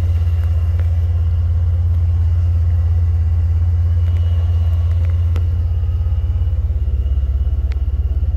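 Vortech-supercharged 3.8-litre V6 of a 2008 Jeep Wrangler Unlimited idling with a steady low rumble, with a couple of faint clicks about five and eight seconds in.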